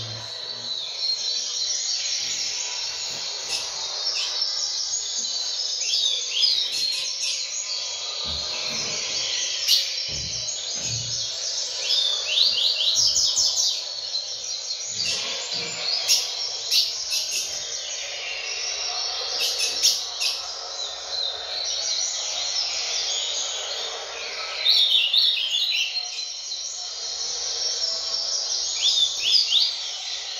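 Male double-collared seedeater (coleiro) singing: short phrases of quick, high, rattling notes repeated every few seconds. Under it runs a steady background hiss.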